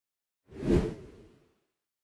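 A single whoosh sound effect that swells quickly about half a second in and fades away within a second.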